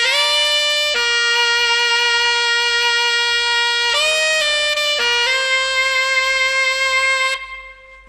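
Unaccompanied alto saxophone playing a few long held notes, the first scooped up into pitch, with a short pause near the end.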